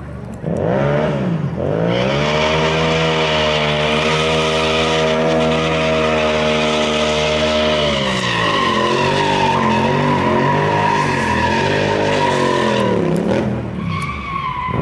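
Motorcycle engine revved up hard and held at high revs while the rear tyre screeches in a smoking burnout. From about eight seconds in, the revs rise and fall repeatedly as the bike spins in a circle, with a steady tyre squeal over it.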